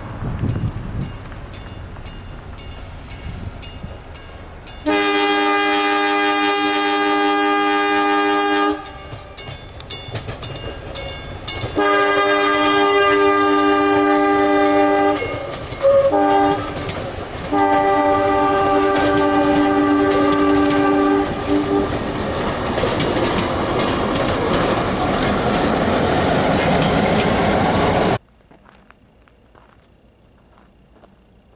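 Chicago and North Western F7A diesel locomotive's multi-chime air horn sounding the grade-crossing pattern: long, long, short, long. The horn is followed by the rising rumble and clatter of the bi-level passenger cars rolling past, which cuts off suddenly near the end.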